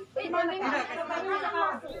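Several voices talking over one another, as customers angrily argue with shop staff.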